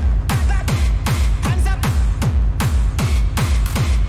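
Hard techno: a fast, driving four-on-the-floor kick drum, about two and a half to three kicks a second, each kick dropping in pitch, under a repeating synth riff.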